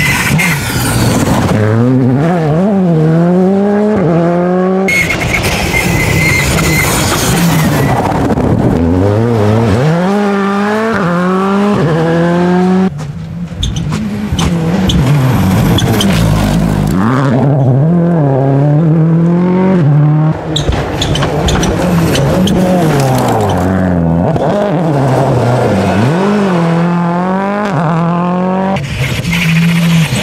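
Several rally cars at race pace on a dirt road, one after another: each engine's revs climb hard and drop back at gear changes and lifts.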